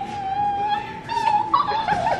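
A long, high, whimpering whine like a begging puppy's, held on one slightly wavering pitch, breaking into a few short falling yelps near the end.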